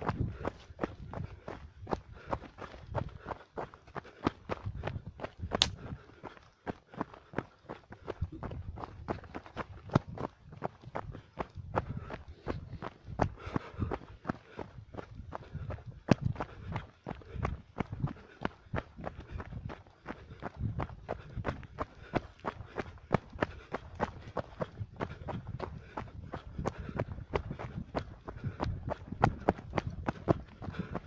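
Running footsteps on a dirt mountain trail, an uneven patter of several footfalls and knocks a second, over a low rumble of wind and jostling on a handheld camera.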